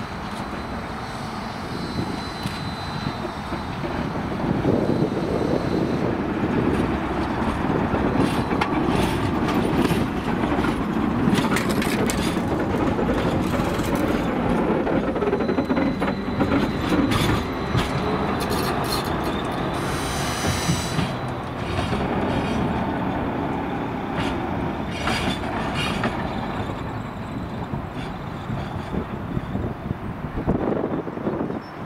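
Trams running past close by on street track: a steady rolling rumble of steel wheels on rail, with runs of clacking as the wheels cross rail joints and points, and a brief burst of higher-pitched wheel noise about two-thirds of the way through.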